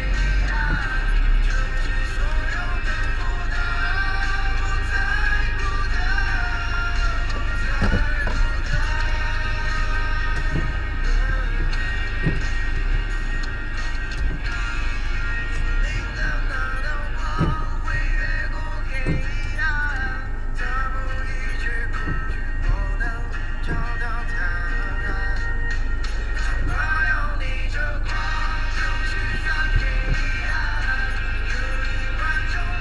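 Music with singing from the car's radio, heard inside the cabin over a steady low engine and road rumble.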